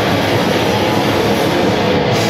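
Live heavy metal band playing at full volume: distorted electric guitars, bass and drums in a dense, unbroken wall of sound.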